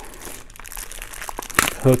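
Small plastic hardware bag crinkling as it is handled and pulled open, with a sharper, louder rustle near the end.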